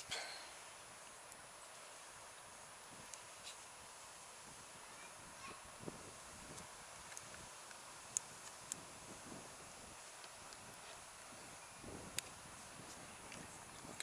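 Quiet outdoor background hiss with a few scattered faint clicks and taps.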